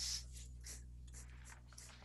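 Open headset microphone picking up a steady low electrical hum, with a string of short, soft noises over it. The loudest of these comes right at the start.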